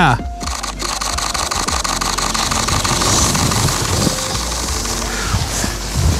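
Canon R3 mechanical shutter firing in a continuous high-speed burst, a fast even run of shutter clicks that stops twice briefly in the first second, then runs on steadily until near the end.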